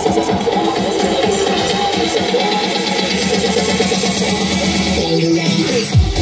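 Electronic dance music from a DJ set, played loud through a large open-air PA sound system. About five seconds in, the bass drops away for a moment before the beat comes back in.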